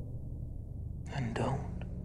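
A low, steady drone from the soundtrack, with one breathy whispered word about a second in.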